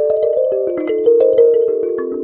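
Calm background music played on chiming, bell-like mallet percussion, its notes stepping downward in pitch.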